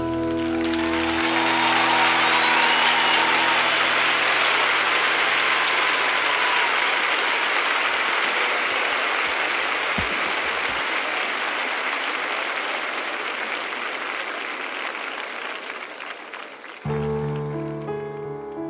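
Concert audience applauding, long and steady, slowly fading. The band's last chord dies away in the first second, and a piano starts playing near the end.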